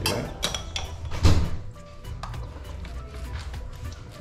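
Background music, with a few sharp knocks and clinks in the first second and a half, the loudest just over a second in, as a spoon scoops seasoning from a jar and works it over fish in a plastic tub.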